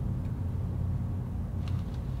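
Steady low rumble of a car heard from inside its cabin while it stands still.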